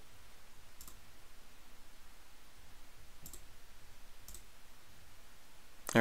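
Three faint computer mouse clicks, a second or more apart, over a low steady background hum.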